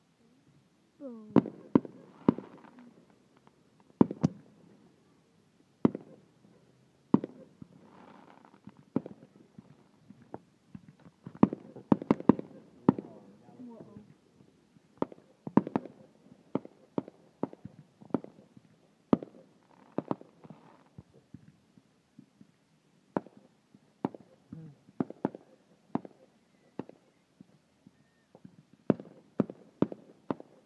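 Fireworks going off in an irregular series of sharp bangs, sometimes several in quick succession, with the densest cluster about a third of the way in.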